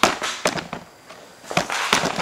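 A handful of sharp knocks, about five in two seconds, irregularly spaced.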